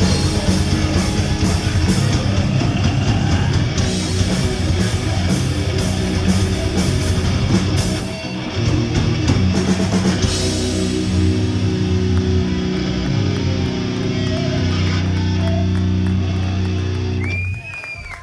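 Live heavy metal band playing loud: distorted electric guitars, bass and a drum kit with rapid drum and cymbal hits, then from about ten seconds in long held chords ring out and cut off just before the end, closing the song.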